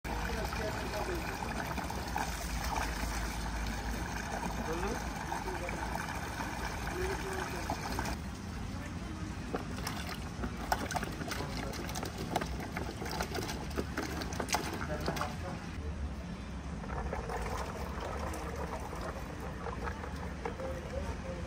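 Water from a hose pouring steadily into a large metal cauldron for the first eight seconds or so. After that come scattered knocks and soft thuds as cut tomatoes tip from a plastic bowl into the cauldron.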